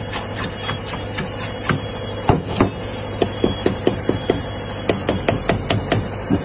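Steel tamping rod rodding fresh concrete in a steel air-meter bowl for a pressure-method air-content test, its strokes knocking against the bowl. The knocks are scattered at first, then come in a quick run of several a second through the second half.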